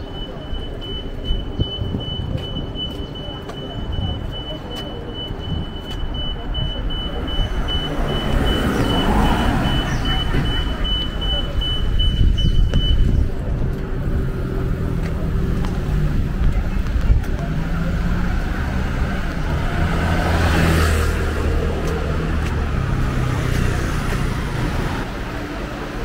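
City street traffic: motor vehicles running and passing, swelling twice, about a third of the way in and again past two thirds. Over the first half a fast, evenly repeating high-pitched electronic beep sounds, then stops.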